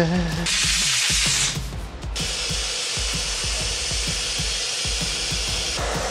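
Water running from a tap over a part being rinsed, a brief rushing hiss, then a steadier hiss, over background music.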